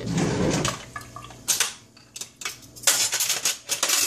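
Kitchen handling at a counter: a short swirl of liquid at first, then cups and utensils clinking and clattering a few times.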